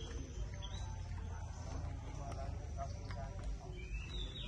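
Outdoor ambience: faint, indistinct voices of people talking at a distance over a low rumble, with a bird chirping briefly about a second in.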